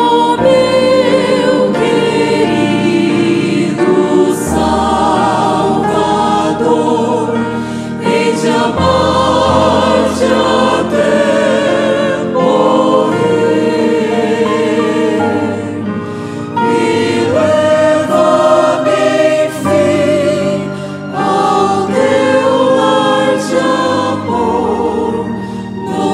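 A mixed vocal ensemble of women and men singing a gospel hymn together, holding long notes with vibrato.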